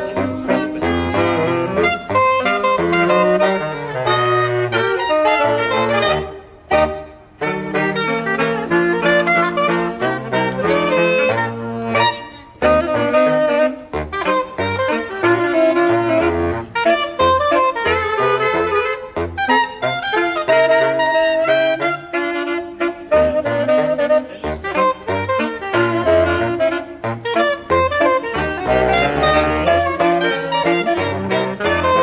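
Saxophone quartet playing jazz in several parts, with low notes stepping beneath the higher lines. The playing stops briefly about six to seven seconds in, then goes on.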